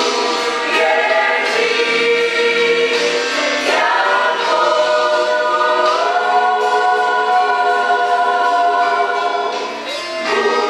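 Mixed choir of men and women singing a gospel song, the voices moving through several chords and then holding one long chord from about four seconds in that eases off near the end.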